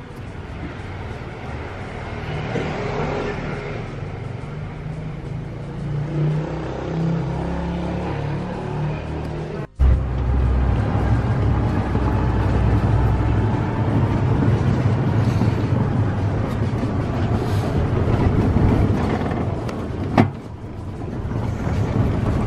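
A golf cart driving along: a steady low rumble of motor and wheels. The sound cuts out for a moment about ten seconds in, then returns louder. There is one sharp click near the end.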